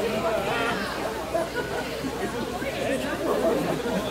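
Indistinct chatter from several people talking at once, with no single voice clear.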